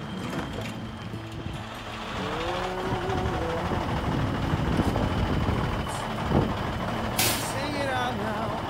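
Semi truck's Cummins diesel engine running steadily, with a short sharp hiss of air from the air brakes about seven seconds in.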